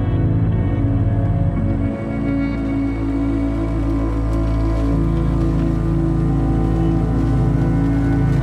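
Instrumental music of held, sustained chords with no singing; the low notes change about two seconds in.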